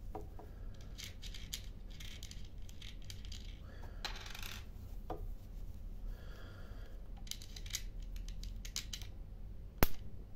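Small metal clicks and scrapes as a cable lug and washer are fitted onto a LiFePO4 battery terminal, then near the end one sharp snap: a spark as the terminal makes contact and the inverter's input capacitors charge, which is normal when connecting it.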